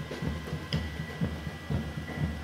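Street ambience of a large pack of runners going past on the road, with a rhythmic low thumping at about four beats a second and a faint steady high tone.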